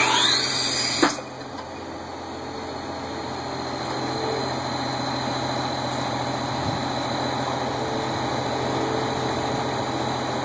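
Hagie high-clearance applicator carrying a 60-ft nitrogen toolbar, its engine and drive running steadily as the bar moves through standing corn. A sharp knock comes about a second in. After it the running noise drops, carries a thin high whine and slowly grows louder.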